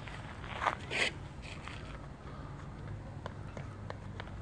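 Faint footfalls of running shoes on a rubber athletics track, with a few light taps in quick succession in the second half as the athlete steps into the mini hurdles. Two short breathy sounds come about a second in, over a steady low background hum.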